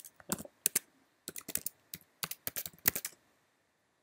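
Computer keyboard being typed on in quick, irregular keystrokes for about three seconds, then stopping: login credentials being entered.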